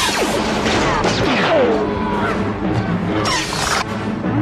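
Sci-fi battle soundtrack: orchestral score under blaster fire, with several falling-pitch zaps and crashes.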